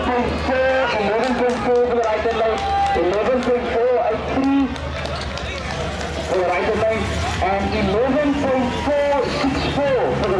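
Crowd of spectators talking, several voices overlapping into an unclear babble, with a low steady hum underneath.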